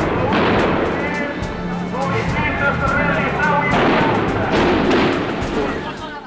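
Bursts of gunfire fired into the air, on an old archive recording, with music and voices underneath. The loudest bursts come at the start and again about four seconds in.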